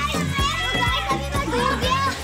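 Background music with a steady beat, mixed with children shouting and playing in a swimming pool.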